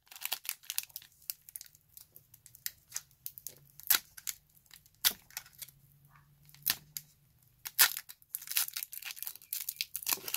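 Foil Pokémon booster pack wrapper being torn open by hand at its crimped seal: irregular crinkling and ripping, with sharper rips about four, five and eight seconds in.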